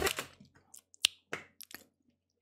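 About four short, sharp clicks in quick succession, starting about a second in.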